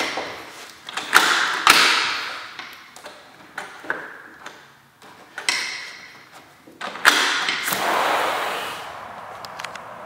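A back door being unlatched and opened: a run of clicks, knocks and rattles from the latch and frame, then a longer rush of noise about seven seconds in as the door opens.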